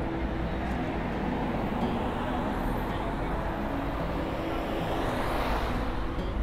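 Street traffic noise on a wet road: a car passes close, its tyre hiss swelling about five seconds in.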